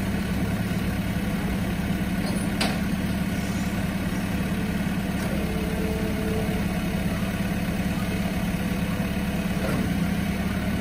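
Car-transporter truck's engine idling steadily, with a single sharp click about two and a half seconds in.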